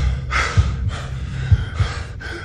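A person breathing hard, with a loud gasping breath about a third of a second in and another near the end, over repeated low thumps.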